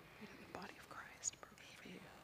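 Faint, hushed voices speaking softly, almost whispered, with a brief sharp hiss just past a second in.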